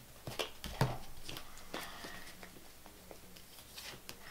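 A deck of tarot cards being picked up and handled: a few sharp card clicks in the first second, the loudest near one second in, then a brief rustle of cards sliding against each other and a few faint ticks.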